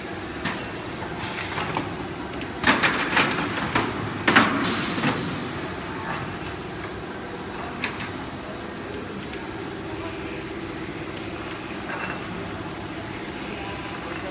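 Double-layer PE stretch film winding machine running with a steady hum. About three seconds in comes a burst of sharp clatter and hiss lasting around two seconds as the automatic paper-core change moves a new core into place.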